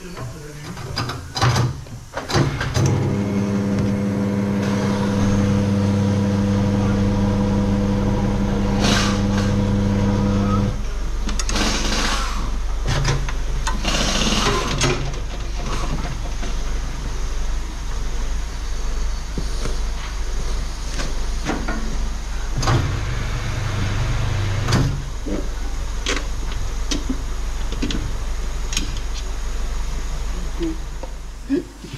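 Garage machinery running: a steady electric motor hum for about eight seconds, then a lower steady drone that carries on. Over it come a few short rushes of noise and scattered clicks and knocks from handling a motorcycle tyre and inner tube on a spoked wheel.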